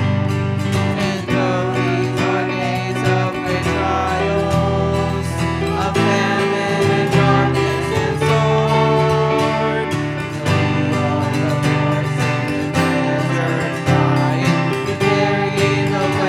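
A group of men and women singing a worship chorus into microphones over a strummed acoustic guitar.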